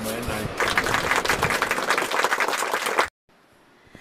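Applause, many hands clapping in a dense patter, starting about half a second in after a brief word from a man and cutting off abruptly about three seconds in.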